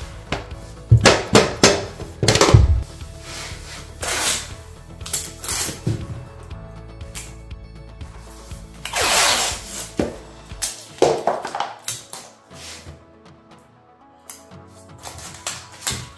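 Sharp hammer taps on a metal pull bar, driving the last vinyl plank's locking joint home, over background music. About nine seconds in comes a second-long rasp of blue painter's tape being pulled off the roll.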